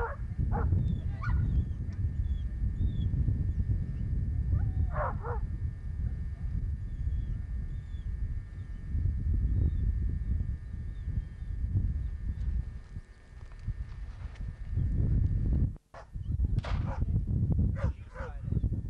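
Deerhounds in a few short bursts of high yelps and barks, over a steady low rumble. The sound drops out briefly near the end.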